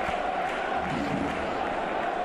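Stadium crowd of football fans cheering and chanting steadily, celebrating a home goal.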